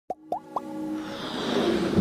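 Intro sound effects for an animated logo: three quick rising pops about a quarter of a second apart, then a swelling whoosh that builds steadily louder.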